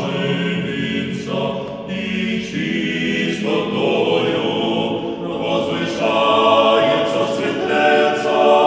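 A cappella church choir singing a slow hymn in held chords that change every second or two.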